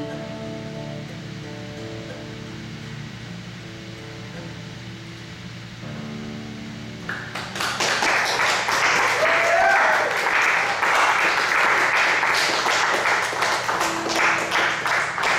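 Acoustic guitar's final notes ringing out and fading at the end of a song, then a small audience applauding from about seven seconds in.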